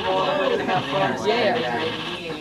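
Several voices talking over one another, with one high, wavering, bleat-like voice.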